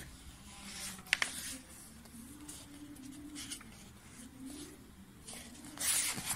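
Paper notebook pages being handled and flipped by hand: faint rustles, a sharp click about a second in, and a louder rustle of a page turning near the end, over quiet room tone.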